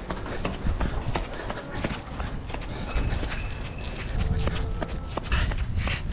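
Running footsteps with a quick, steady run of footfalls, heard close with a low rumble of wind and handling on the camera's microphone.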